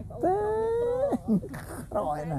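A single drawn-out animal cry lasting about a second, rising slightly in pitch and then dropping away.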